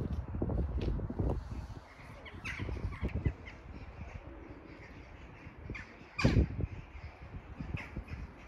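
Crows cawing outdoors: a few short, falling calls, the loudest about six seconds in. Wind rumbles on the microphone for the first couple of seconds.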